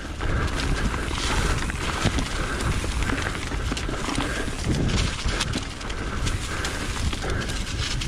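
Mountain bike riding down a dry, leaf-covered dirt trail: a continuous rough rumble of tyres over the ground with many small clicks and rattles from the bike over bumps.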